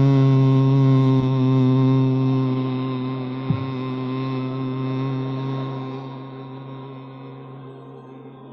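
A roomful of people humming one long low note together, a steady drone that slowly fades away toward the end. A small knock sounds a few seconds in.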